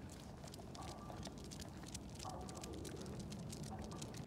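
Faint outdoor ambience from a walk with two dogs on a concrete sidewalk, with light, irregular ticking and jingling from their collar tags and footsteps.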